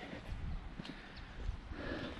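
Footsteps on gritty concrete stadium steps: a few faint, irregular taps and scuffs.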